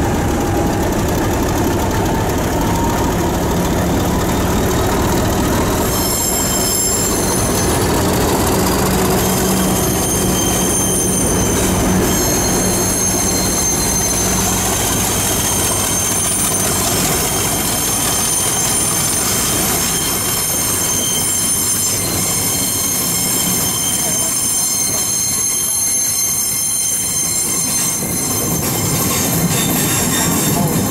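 A diesel-locomotive-hauled passenger train pulls out past the platform. A locomotive engine gives a steady low hum through the first half. From about six seconds in, as the coaches roll by, the wheels give a continuous high-pitched squeal.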